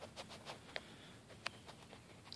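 Near-quiet room tone with a few faint, light clicks scattered through it.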